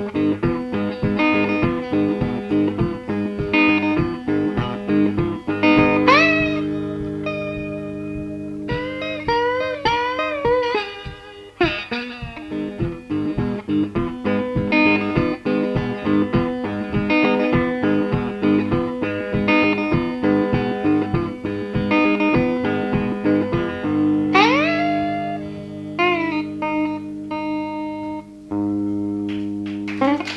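Electric blues guitar playing an instrumental break: a repeating picked riff over a droning low note, with notes bent or slid upward about six seconds in, again around ten seconds, and near the end.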